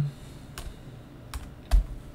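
A few scattered keystrokes on a computer keyboard, about three separate taps, the last one louder.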